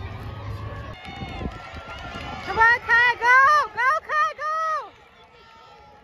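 A spectator's high-pitched voice shouting encouragement at a sprint race, about six loud yells in quick succession starting about two and a half seconds in, over a faint background of crowd voices.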